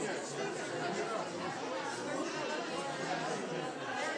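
Several people talking at once: overlapping conversational chatter, steady throughout.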